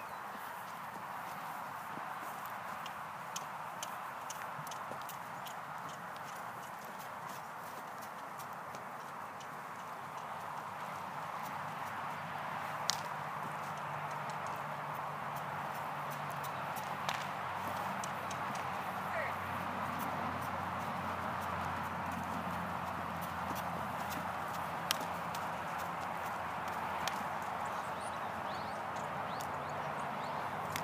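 A Percheron gelding's hooves striking dirt ground as he is worked on a lead rope: irregular, scattered hoofbeats, a few louder than the rest, over a steady hiss.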